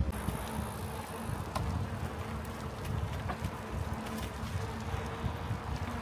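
Wind buffeting the microphone outdoors, a steady low rumble with a few faint ticks.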